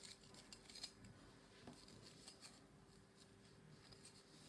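Near silence: faint scattered taps and light rubbing as a strip of merbau is handled and slid on a wooden workbench, over a faint steady hum.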